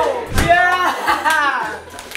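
Excited voices shouting and squealing in celebration, with pitch sliding up and down, and a sharp slap of hands about half a second in.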